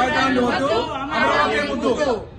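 Several voices speaking in unison, chanting a Telugu slogan together.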